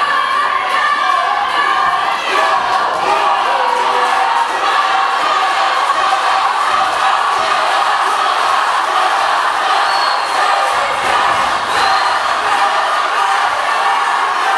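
Spectators shouting and cheering, many voices overlapping at once.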